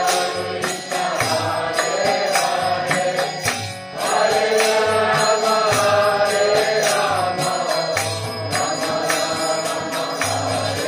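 Kirtan: voices chanting a devotional mantra in unison over a steady beat of drum strokes and hand-cymbal strikes. The chanting grows louder and fuller about four seconds in.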